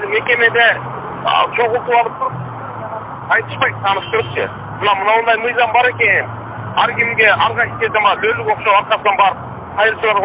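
A man speaking over a telephone line. His voice sounds thin and narrow, with a steady low hum beneath it.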